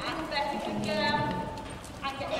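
Ponies' hooves at a walk on an indoor arena's sand floor, under indistinct voices.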